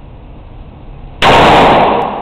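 Kalashnikov (AK) rifle firing about a second in, loud enough to overload the recording, with an echo trailing off in an indoor shooting range.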